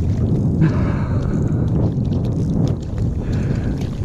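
Wind buffeting the microphone: a steady low rumble, with a brief hiss rising over it about half a second in and again near the end.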